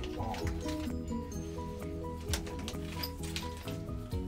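Background music: a melody of short repeated notes over a steady bass line.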